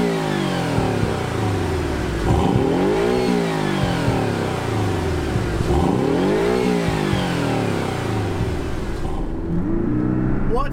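Porsche 718 Cayman's turbocharged flat-four revved while the car stands still. The pitch climbs and falls back three times, roughly every three and a half seconds.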